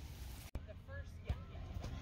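Faint, distant voices of people calling and chattering outdoors over a low steady rumble, with a sudden brief dropout about half a second in.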